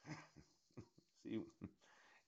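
A man's voice in short, quiet bursts with gaps: breathy vocal sounds and a single spoken word about a second in.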